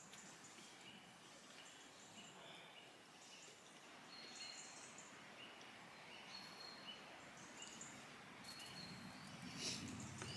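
Near silence with faint woodland birdsong: short high chirps repeated every second or so. A brief louder rustle comes just before the end.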